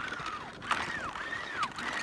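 A skier hauling a sled across clear lake ice: a run of about four short squeaky chirps that arch and fall in pitch, with a few faint clicks.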